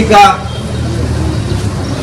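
A man says one word into a public-address microphone at the start, then pauses; through the pause a steady low hum continues underneath.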